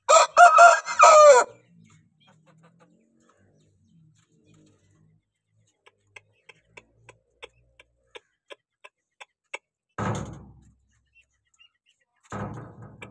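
Aseel rooster crowing once at the start, a loud crow of about a second and a half with wavering pitch. Later come a faint run of evenly spaced clicks, about three a second, and then a brief noisy burst about ten seconds in.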